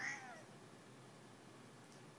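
Domestic cat giving one short meow, its pitch rising and then falling, after being woken from sleep.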